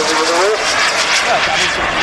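Turbine engines of two radio-controlled model Grumman Panther jets in flight, making a steady, hissing jet rush. A commentator's voice is heard over the first half second.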